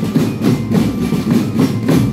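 Marching drum band's snare and tenor drums playing a dense, rolling pattern with regular accents.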